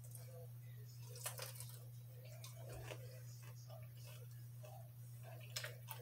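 Faint chewing of sweet potato fries: soft wet mouth sounds with a few small clicks, over a steady low hum.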